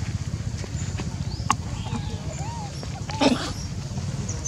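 A short, harsh animal call a little after three seconds in, the loudest sound, over a steady low outdoor rumble. A few faint squeaky calls come just before it.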